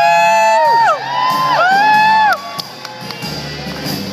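A live blues band with horns plays two long held notes. Each note bends up at the start and falls off at the end. After the second note ends, about two and a half seconds in, the band plays on more quietly.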